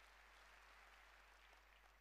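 Near silence: a faint, even hiss of room tone.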